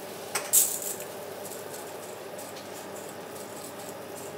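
A bundle of dry spaghetti dropped into a pot of boiling water: a short rattle and hiss about half a second in, then the pot's steady low boil with a few faint clicks.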